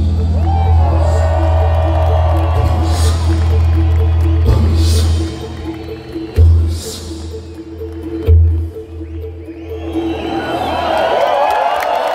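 Live rock band holding a final chord over deep bass, then two loud closing hits about six and eight seconds in. A crowd cheers and whoops over it, swelling near the end.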